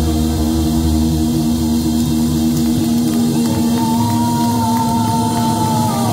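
Live hard rock band playing: electric guitar, bass and drums on a held chord that drops away about three seconds in. A long high note with vibrato then comes in and holds.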